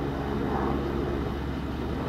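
Distant airplane flying over, a steady low drone.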